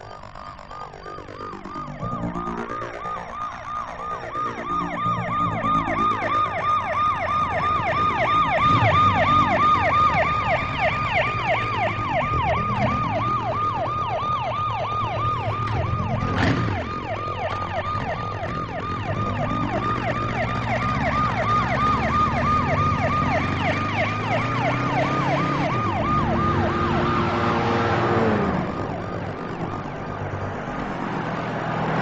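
A siren warbling rapidly up and down, building in loudness over the first several seconds and stopping a few seconds before the end, over the steady low sound of a motor vehicle engine. A single sharp hit sounds about halfway through.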